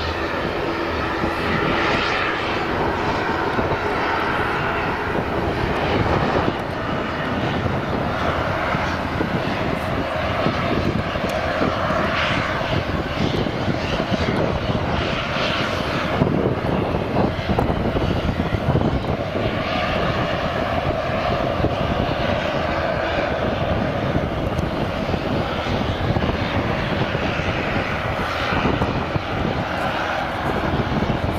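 Jet aircraft engines running, a loud, steady rushing noise that holds on without a break.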